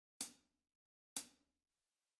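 Two short, crisp ticks about a second apart, like light hi-hat taps, with near silence around them.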